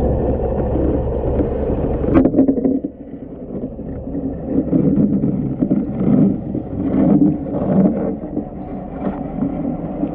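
Muffled underwater sound picked up by a camera in the water under a boat's hull. A low rumble cuts off about two seconds in, followed by irregular swells of water noise with small knocks.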